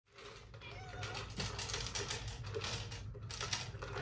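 House cats meowing faintly, with scattered light clicks and a steady low hum underneath.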